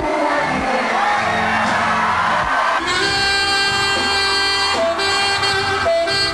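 Live band music at a pop concert, with crowd noise and a wavering voice over it at first; about three seconds in the band settles into a long held chord.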